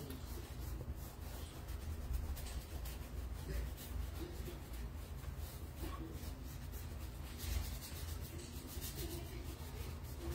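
Paintbrush strokes rubbing and scratching on a stretched canvas, a run of short brushing strokes over a low rumble.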